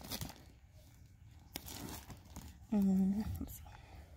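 Plastic shrink-wrap on a cardboard box crinkling softly as the box is handled and moved. A brief hummed voice sound about three seconds in.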